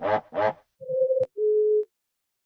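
Two short buzzy voice-like bursts, then a two-note electronic warning beep, a higher tone followed by a slightly lower one, signalling a low battery. A click falls between the two tones, and the sound cuts off suddenly.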